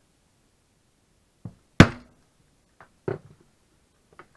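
Mallet striking a hand hole punch through leather on a wooden workbench: two main blows about 1.3 s apart, the first the loudest with a brief ring, with a few lighter taps around them.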